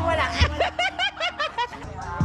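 A person laughing in a quick run of short ha-ha bursts, lasting about a second, over background music.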